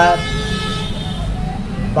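A vehicle horn held in one long, steady note that stops about a second in, over a steady low hum.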